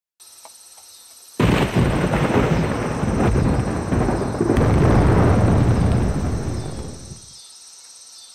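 A sudden loud clap of thunder about a second and a half in, rumbling for about six seconds before dying away, over a steady chorus of crickets.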